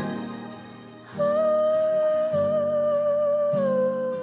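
Music from a song: the loud preceding passage dies away, and about a second in a voice hums one long held note that slides down slightly near the end, over soft low accompaniment.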